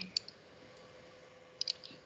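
Computer mouse clicks: one click just after the start, then a quick cluster of three or four clicks near the end.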